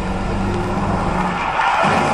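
A car engine running with a steady low hum, then a swelling rush of road noise about one and a half seconds in.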